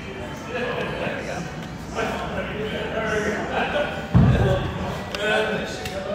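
Indistinct voices of people talking in a large gym hall, with one heavy, low thud about four seconds in.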